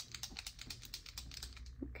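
Tube of brow ink being shaken by hand, giving a fast run of faint clicks several times a second, mixing the ink before use.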